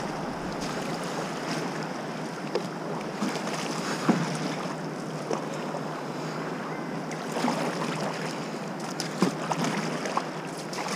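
Fast, high-water river current rushing and churning around a kayak, with a few short, sharper splashes.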